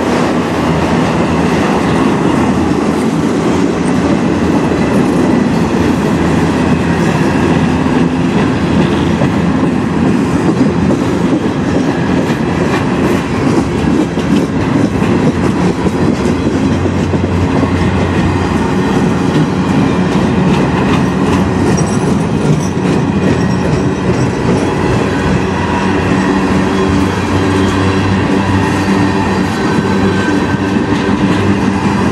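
Freight cars of a long manifest train rolling past close by: a steady, loud rumble and clatter of steel wheels on the rails.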